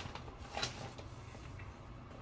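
Quiet room tone with a few faint, short taps and clicks of small objects being handled.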